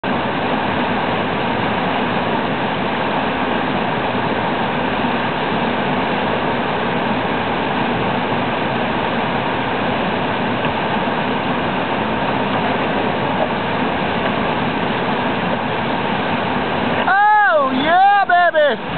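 Steady, loud rush of whitewater rapids. Near the end a person shouts loudly, the voice rising and falling.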